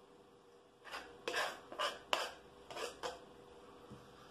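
A kitchen knife scraping across a plastic cutting board, sweeping chopped dill off onto a plate: about six short scrapes in quick succession over two seconds.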